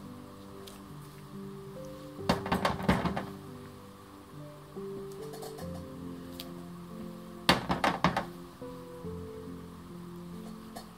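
Soft background music with held notes, broken twice by a quick cluster of knocks and clicks, about two seconds in and again about seven and a half seconds in. The knocks come from a clear acrylic stamp block being set down and pressed onto paper while stamping.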